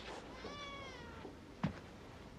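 A faint, short squeal with a meow-like shape: one pitched cry rising slightly and then falling over about a second, followed by a single soft knock.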